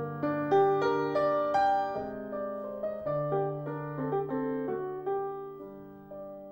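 Piano music accompanying the silent film: a melody of struck notes over held low bass notes, busier in the first couple of seconds and slower after.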